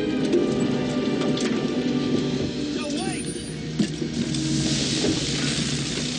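Film soundtrack mix: sustained notes of the orchestral score under scattered crackles and a short rising cry-like glide, with a hissing rush swelling over the last two seconds.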